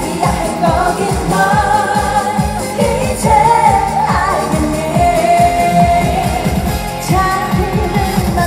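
A woman singing a Korean trot song live into a microphone over a backing track with a steady dance beat.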